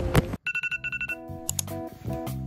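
Smartphone alarm tone: a quick run of high, evenly repeating beeps, cutting off about a second in as background music starts.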